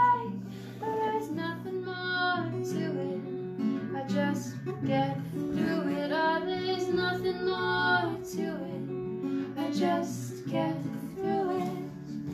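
Acoustic guitar played with a capo, accompanying a woman singing a song.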